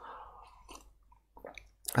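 A person sipping a drink from a cup: a short soft slurp, then a few faint mouth and swallowing clicks.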